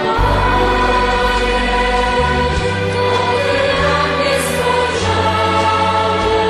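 Background music: a choir singing over sustained deep bass notes that change every second or two.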